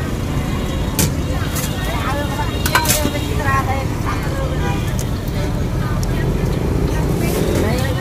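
Busy street ambience: a steady rumble of road traffic with faint background voices. A few sharp clicks sound about a second in and again near three seconds.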